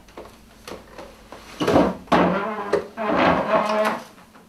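A man's loud, wordless vocal cries and strained sounds, in three stretches starting about a second and a half in, acted out as a dramatic death. They follow a few light knocks.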